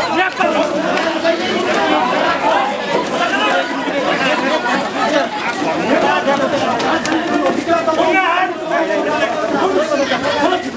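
Crowd of protesters and police shouting and talking over one another in a tight scuffle: a dense, unbroken babble of many overlapping voices.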